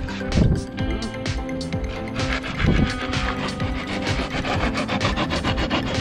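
Expanded-polystyrene (tecnopor) blocks scraping and rubbing as they are handled and pressed into place, turning into rapid, continuous scraping strokes about two seconds in.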